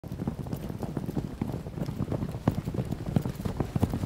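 A rapid, irregular run of soft, hollow knocks and clicks, several a second.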